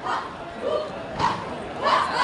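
Short, sharp shouted calls from human voices, the loudest about a second in and again near the end, over a murmur of crowd chatter.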